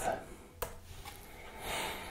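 A man's voice trails off, then quiet room tone with a single short click a little over half a second in and a soft breathy rustle near the end.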